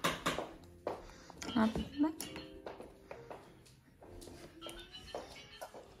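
Low-level room sound: a few soft clicks and knocks, short murmured voice sounds, and faint background music.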